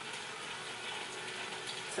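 Kitchen tap running steadily, filling the sink with dishwater.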